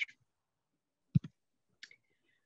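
A computer mouse or keyboard clicks once, sharply and doubled, a little past halfway, to advance a presentation slide. The rest is near silence, with a brief faint hiss near the end.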